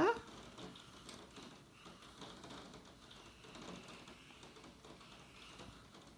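Faint brushing and light scratchy taps of a wet watercolour brush working over paper.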